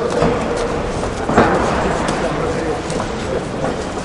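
Indistinct ringside voices and calls in a boxing hall, with a sharp smack about a second and a half in.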